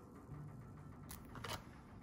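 Small plastic seedling-cover and planting-basket parts being handled, with two light clicks about a second in, over a faint low hum.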